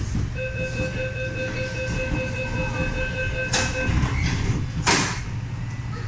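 MTR MLR train's door-closing warning: a rapid beeping tone for about three and a half seconds, then the sliding doors shut with two knocks, the louder one about five seconds in, over a steady low hum.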